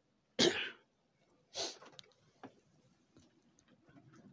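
A loud, short cough about half a second in, then a second, fainter cough about a second later.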